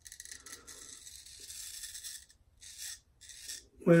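Straight razor blade scraping through lathered beard stubble on the cheek: one long stroke lasting about two seconds, then two short strokes.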